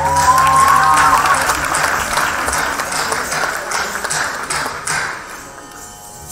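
Audience applauding as the accompanying music ends on a held, slightly rising note; the clapping thins out and fades away toward the end.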